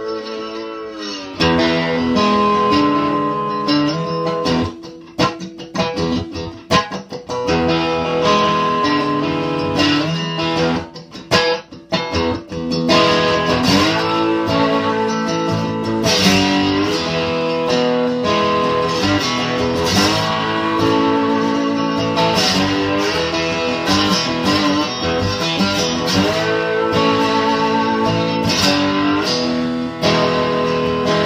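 Wooden-bodied resonator guitar, plugged into an electric guitar pedal board, strummed and picked. Its notes glide down in pitch about a second in, then come as choppy strums with short gaps, and settle into steadier playing after about 13 seconds.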